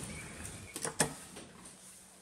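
Two sharp clicks close together about a second in, over faint room tone in a small elevator cab.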